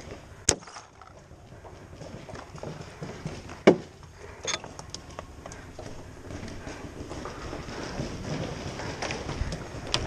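Sporadic paintball fire during a game: a few sharp single pops, the loudest about half a second in and another just under four seconds in, over a faint background.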